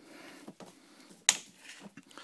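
A single sharp click a little over a second in, from the plug and cord being handled at a generator's outlet, over faint room noise.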